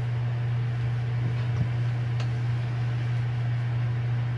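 Steady low hum with faint room noise, and a faint tap about one and a half seconds in.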